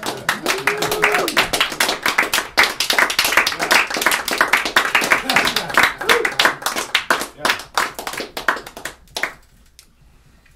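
A small audience clapping, with a few voices at the start. The applause thins out and stops near the end.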